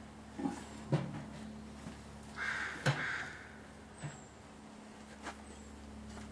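Wooden beehive boxes and frames being handled while an open hive is worked: a handful of sharp knocks and clicks, the loudest a little under three seconds in, over a steady low hum. A short harsh call sounds about two and a half seconds in.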